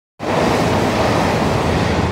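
Steady rushing noise of a moving suburban electric train heard from inside the carriage, a low rumble under a loud hiss of air, starting abruptly just after the beginning.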